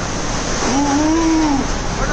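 Cyclone wind blowing hard with a loud, steady rushing. In the middle, a single wailing tone rises and falls for just under a second.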